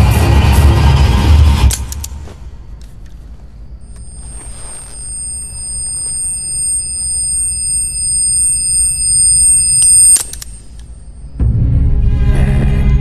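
Film soundtrack: loud music with a heavy low beat stops abruptly about two seconds in. A high, steady ringing tone then swells louder for about six seconds and cuts off suddenly. The loud music comes back near the end.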